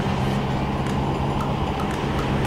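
Steady low engine hum and road noise of a moving car, heard from inside the cabin.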